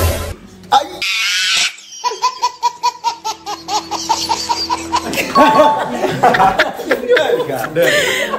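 A baby laughing in quick, evenly spaced bursts for about three seconds, then several people laughing and talking over one another. A short noisy burst comes about a second in.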